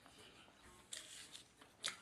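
Faint, quiet room with a few short clicks and rustles of small handling or mouth noise, the sharpest about a second in and just before the end.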